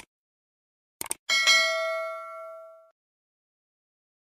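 Subscribe-button animation sound effect: a click, a quick double click about a second in, then a bell ding that rings out and fades over about a second and a half.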